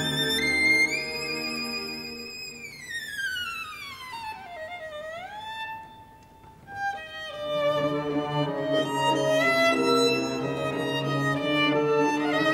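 Solo violin climbs to a high held note, then slides down in one long glissando and settles on a soft lower note. After a brief near-hush, fuller playing resumes with lower sustained notes sounding beneath the violin.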